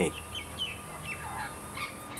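Several short, high bird chirps scattered across a couple of seconds, over a steady background hiss.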